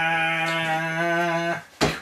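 A single steady musical note with many overtones, held without wavering and cutting off about one and a half seconds in.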